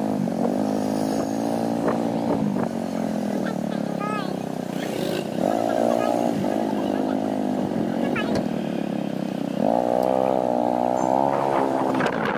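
Motorcycle engine running while riding in city traffic. Its pitch rises and falls several times as it speeds up and slows.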